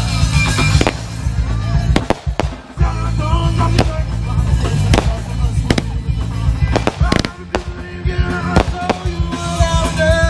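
A consumer fireworks cake firing, sharp bangs roughly once a second, over continuing music and voices.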